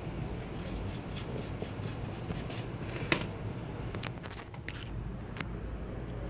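A toothbrush scrubbing a laptop motherboard to clean the freshly soldered jumper wire, a steady scratchy brushing with a few sharp clicks in the middle, over a steady low hum.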